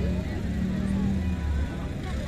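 Stock-car engines running at low revs, a steady low drone, with faint voices over it.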